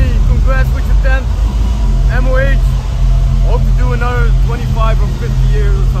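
A man talking in short phrases over a loud, steady low rumble.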